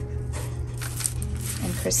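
Thin, crisp-baked Ezekiel tortilla pizza crust crackling as a slice is torn off on parchment paper, a short run of crisp crackles in the first half. Background music plays underneath and a woman's voice starts near the end.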